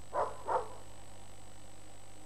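A dog barking twice in quick succession, two short barks about a third of a second apart near the start, over a steady background hiss.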